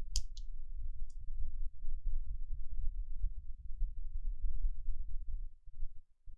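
A few sharp clicks in the first second or so, over a continuous low rumble that drops away near the end.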